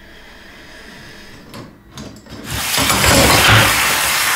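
A few light clicks of handling, then about two and a half seconds in a loud rush of water starts as a leaking kitchen faucet fitting sprays water out.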